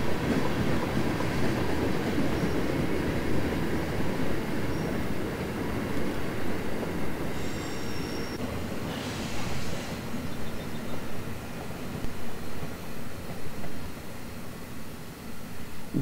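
Freight train with bilevel commuter coaches in its consist rolling past, steel wheels on rail, with a rumble that slowly fades. A brief high wheel squeal comes a little before halfway, and separate wheel clicks over rail joints come in the second half.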